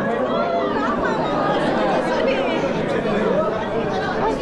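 Crowd chatter: many people talking at once in a large room, a dense steady babble of overlapping voices.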